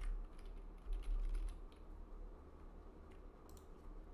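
Computer keyboard typing: scattered, irregular key clicks over a steady low hum.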